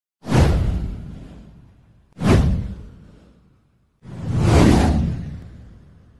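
Three whoosh sound effects for an animated title intro, about two seconds apart. Each swells up quickly with a deep boom underneath and then fades away; the third builds up more slowly than the first two.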